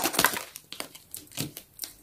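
Plastic blind-bag packet crinkling with irregular crackles as it is handled and opened by hand.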